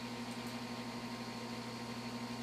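Steady low electrical hum with a constant background hiss: room tone with no other activity.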